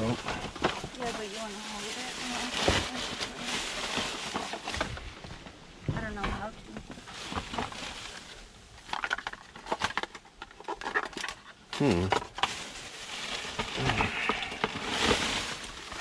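Plastic trash bags and packaging rustling and crinkling as hands dig through a dumpster, with scattered small knocks and clatters from items being moved.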